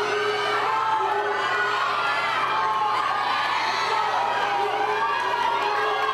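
Spectators at a swim race cheering and shouting the swimmers on, many high voices yelling over one another without a break.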